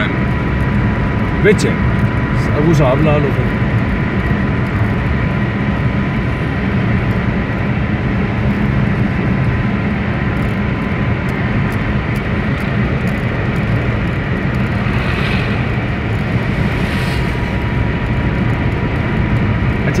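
Steady engine and road drone heard from inside a moving vehicle's cabin, with a thin, constant high whine over it.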